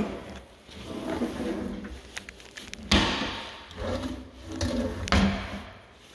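Kitchen drawers being pulled open and pushed shut on their slides. There are a few light knocks, then a longer sliding rush about three seconds in and another near the end. The drawer is a deep pot-and-pan drawer, which looks to have had its top roller removed.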